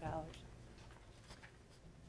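Quiet meeting-room tone with a few faint, short clicks of paper and pen handling at a lectern, just after a spoken word trails off.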